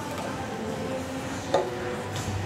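A weight plate pushed onto a barbell sleeve, knocking once against the plate already on the bar about one and a half seconds in, with background music playing.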